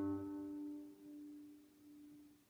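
A single low G, fretted on the low E string of an acoustic guitar, ringing on and fading away after being picked.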